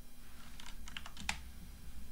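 Typing on a computer keyboard: a handful of separate light keystrokes, one louder just past a second in.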